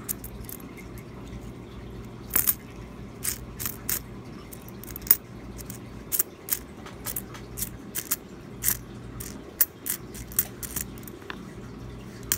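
Jefferson nickels clicking and clinking against one another as fingers slide them one by one off a row of coins onto a mat, in irregular sharp clicks over a faint low hum.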